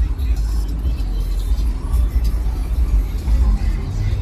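Cars rolling slowly past with a loud, deep, steady bass from car-audio music, with voices mixed in.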